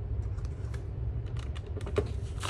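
Keys of a plastic desktop calculator being pressed: a few light taps, then a quicker run of taps near the end, the last one sharper. A steady low hum sits underneath.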